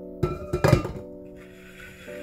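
Background music with a plucked guitar over steady held notes, with a quick cluster of sharp knocks about half a second in.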